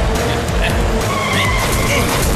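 Background music with a high screeching tyre-skid sound effect in the second half, as a vehicle skids to a stop.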